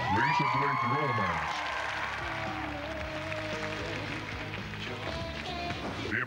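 A recorded pop song excerpt, a voice singing over the band's backing, played as a nominee clip.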